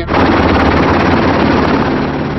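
Helicopter, loud steady rotor chop and engine noise, cutting in suddenly and easing a little near the end.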